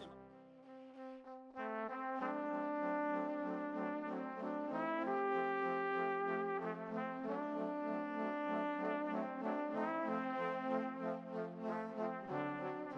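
Brass music, trombones and trumpets playing held chords that change every second or two, starting about a second and a half in.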